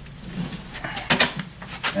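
A hand rummaging inside a wall cavity through a hole in the drywall, among insulation: light rustling, with a couple of sharp brief scrapes about a second in and another near the end.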